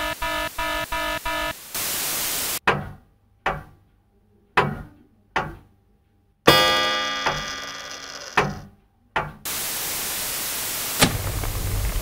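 Weather alert radio beeping a pulsed multi-tone alert, then a short burst of static. Then a series of deep, separate impact hits, each dying away, with one much louder hit about six and a half seconds in that rings on. Static hiss follows near the end.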